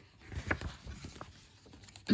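A paper page of a picture book being turned by hand: a few faint, brief rustles and soft taps.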